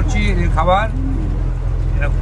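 Tour boat's engine running with a steady low drone, and a man's voice talking over it in the first second.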